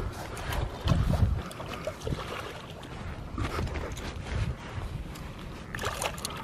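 Hooked bass splashing and thrashing at the water's surface as it is landed by hand at the bank, with irregular gusts of wind rumbling on the microphone.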